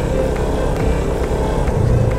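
Motorcycle engine running at riding speed on a rough gravel road, its steady low rumble mixed with road noise.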